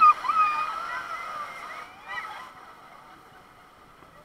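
Rushing whitewater around an inflatable raft, with excited high-pitched shrieks and laughing voices from the riders. The water noise dies away about two and a half seconds in as the raft reaches calm water.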